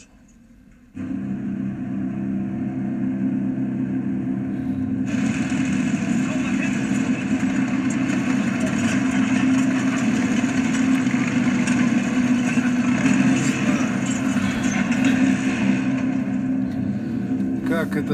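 A steady motor hum with several fixed low tones, switched on suddenly about a second in. A loud rushing noise joins it from about five seconds in and eases near the end.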